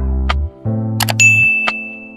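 Subscribe-button animation sound effects over background music: a few sharp mouse-style clicks, and a bright bell ding about a second in that rings on and fades.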